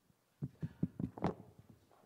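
Finger taps on a PA microphone to test it: a quick run of about half a dozen thumps within a second, the loudest near the end of the run.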